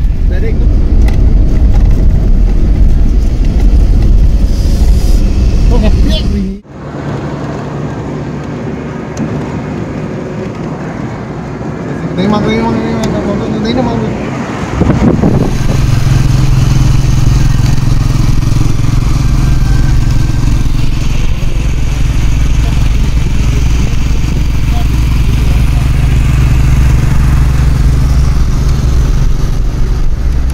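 Engine and road rumble heard from inside a moving car, which cuts off suddenly about six seconds in. A quieter stretch follows, with a brief voice partway through. For the second half, a Royal Enfield single-cylinder motorcycle runs steadily on the road.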